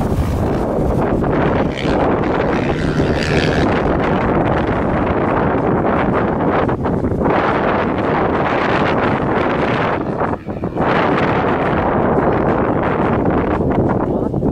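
Wind buffeting the camera microphone, mixed with the engines of motocross bikes running on the track. The buffeting drops briefly about ten seconds in.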